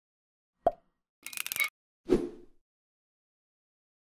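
Logo intro sound effects: a sharp click, then a brief hissing swish about half a second later, then a low pop with a short tail, all within the first two and a half seconds.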